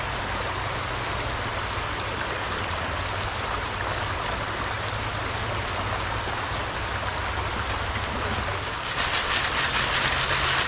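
Shallow creek water rushing steadily over rocks. Near the end a louder splashing lasts about two seconds.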